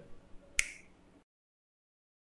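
A single finger snap about half a second in, a sharp click with a short ring. The sound then cuts to dead silence.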